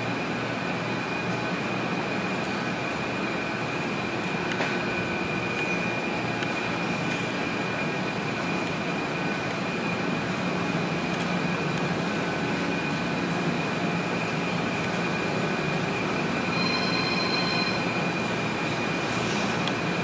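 Steady machine-like noise with a constant high whine running through it. A second, higher tone joins briefly near the end.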